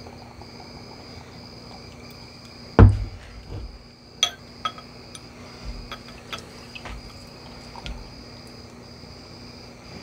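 Glass and bottle handling: one loud thump a little under three seconds in, then a few light clicks and clinks. Under it runs a steady high insect chirring that breaks off briefly about once a second.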